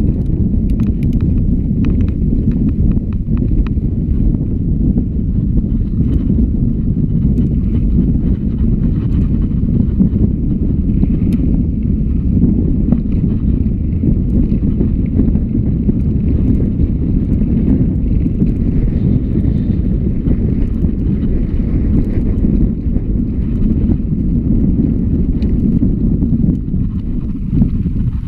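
Mountain bike rolling fast over a rough, stony moorland track: a loud, steady low rumble of tyres and rattling bike, mixed with wind buffeting the camera microphone. Sharp clicks and knocks from stones and the drivetrain come in the first few seconds.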